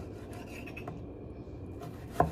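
Kitchen knife cutting on a wooden cutting board: a few light taps and scraping against the board.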